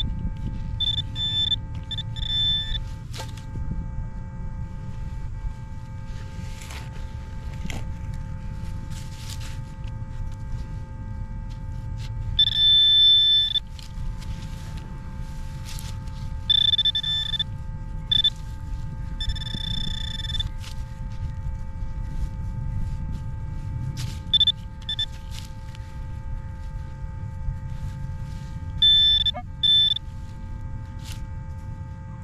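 A metal detector giving short, high-pitched electronic beeps at irregular intervals as a target in a dig hole is pinpointed. The longest and loudest beep, about a second long, comes about twelve seconds in, over a low rumble of handling and digging noise.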